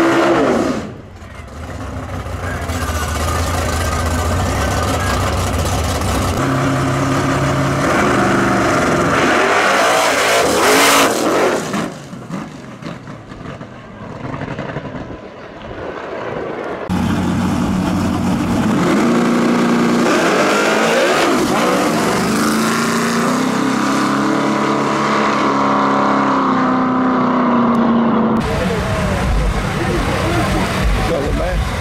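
Drag-racing car engines revving hard through a burnout and staging, with a very loud surge about eleven seconds in as the cars launch, then fading as they run off down the strip; engines are loud again later, with voices mixed in.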